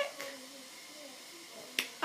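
A single sharp click near the end, over quiet room hiss, with a faint murmur of her voice just after the start.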